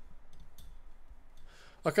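Computer mouse scroll wheel clicking a few times in the first second, light and sharp. A man says "Okay" near the end.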